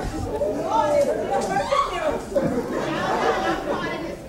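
Several voices talking over one another at once, with no single line standing out, in a hall.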